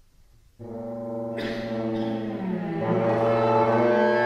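Bassoon and cello starting suddenly about half a second in with sustained low notes, held over a steady low pitch and growing louder, with a brighter, more strident layer joining at about a second and a half.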